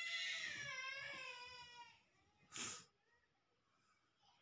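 A high-pitched, drawn-out cry lasting about two seconds, its pitch slowly falling, followed about two and a half seconds in by a short hissing burst.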